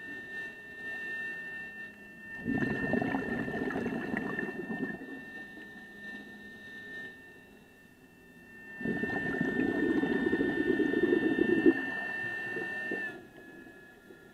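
Scuba regulator exhaust underwater: two bubbling rushes of exhaled air a few seconds each, one breath after another, over a steady high whine.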